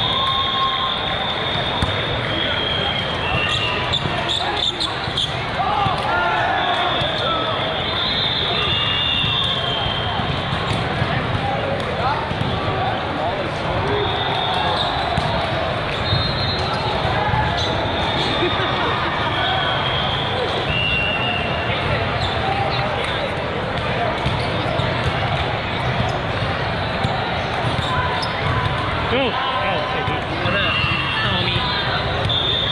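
Busy volleyball tournament hall with many courts: a steady din of many voices carrying and echoing in the large room, mixed with ball hits and frequent short high-pitched squeaks and whistle tones from the courts.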